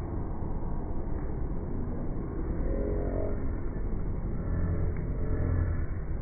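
Muffled low rumble of a phone microphone being handled and rubbed, with a faint pitched sound about halfway through.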